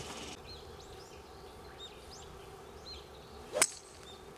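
Golf club striking a ball in a full swing: one sharp, loud click about three and a half seconds in, over steady bird chirping.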